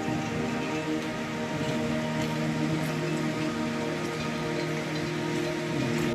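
Steady rain falling, with background music of long held notes underneath.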